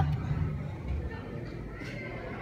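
Hydraulic elevator car starting to rise: a low rumble, strongest in the first second, settling into a steady low hum as it travels up.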